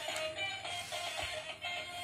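Electronic music with synthesized singing playing from a battery-powered dancing robot toy, a run of short repeated notes.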